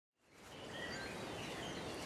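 Outdoor garden ambience fading in from silence: steady background noise with a few faint, short bird chirps.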